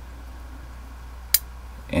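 A single small sharp click as a part is fitted into a plastic model head, a little past halfway, over a low steady hum.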